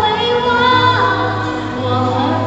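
A woman singing a Mandarin pop song into a microphone over instrumental accompaniment, holding long sustained notes.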